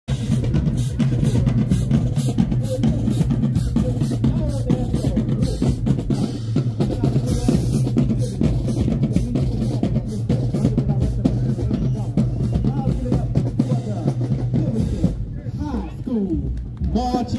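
Marching band drumline playing a marching cadence, with snare drums cracking in an even rhythm over bass drums. The drumming stops about a second before the end.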